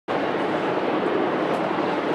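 Steady outdoor background noise, an even wash of sound with no distinct events.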